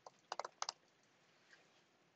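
Typing on a computer keyboard: about four quick keystrokes within the first second.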